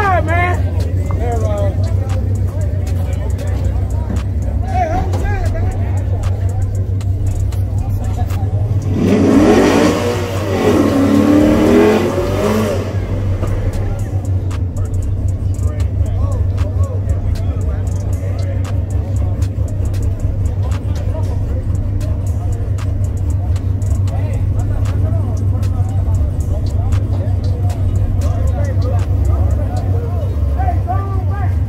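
Drag-race cars idling at the starting line with a steady low rumble; about nine seconds in, one engine is revved hard for about three seconds, its pitch rising and falling twice.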